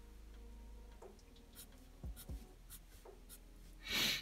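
Felt-tip marker drawing on paper: a series of faint, quick, short strokes, with a louder stroke near the end.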